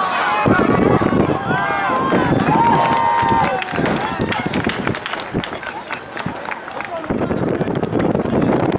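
Several people shouting and calling out across a soccer field, voices overlapping, busiest in the first few seconds.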